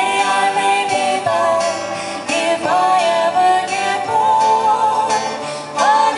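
Live folk song: voices singing over strummed acoustic guitar and other plucked string instruments, with the sung notes sliding up into new phrases near the start, about two and a half seconds in, and near the end.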